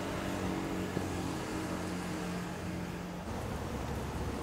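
City street ambience carrying a nearby motor vehicle's engine as a low steady hum, which drops away about three seconds in.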